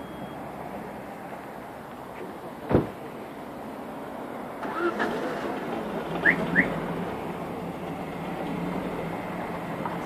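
Street traffic: cars driving past on a city road, a steady rush that grows louder about halfway through. A single sharp knock comes a little under three seconds in, and two short high chirps come about two-thirds of the way through.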